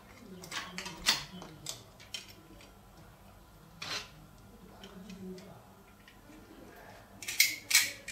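Small sharp plastic clicks and taps as fiber optic patch-cord connectors, an adapter and a one-click fiber connector cleaner pen are handled. There is a scattered few at first, and the loudest two come near the end as the cleaner pen is pushed onto a connector end to clean it.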